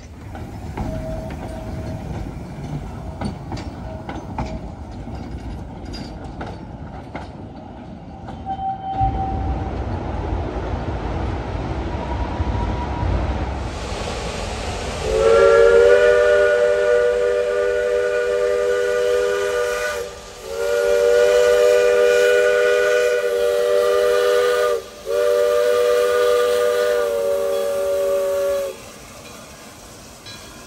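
A narrow-gauge steam train rumbles along with scattered clicks and clanks from its wheels and cars. About halfway in, a steam locomotive whistle sounds a chord of several notes together in three long blasts, the first about five seconds, with short breaks between them.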